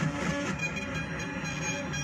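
Modular synthesizer patch playing a dense, sustained, droning texture. A Doepfer A-196 phase-locked-loop voice slides up and down in pitch over many steady tones, all smeared by a Memory Man analog delay.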